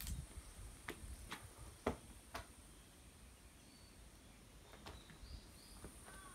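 Quiet outdoor ambience: a few soft footsteps on the ground, about two a second, in the first half, over a faint steady high-pitched hiss, with brief faint bird chirps near the end.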